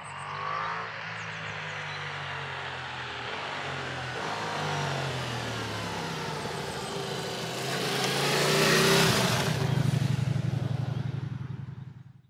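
Ducati Multistrada V4S motorcycle ridden toward and past, its V4 engine rising and falling in pitch through throttle and gear changes. It grows loudest as the bike draws near and passes, then fades away.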